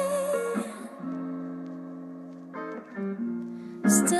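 Recorded pop song thinning out to guitar alone: the full band and drums fall away in the first second, leaving sustained guitar chords that change a few times. A sharp, bright entry comes just before the end as the next section begins.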